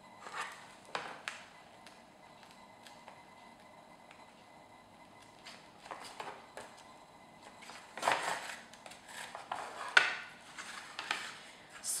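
Paper and linen thread being handled while a notebook is hand-sewn: short rustles as the thread is drawn through the sewing holes in the first second or so, then rustling and light tapping of pages and cover as the book is handled, with one sharp tap about ten seconds in.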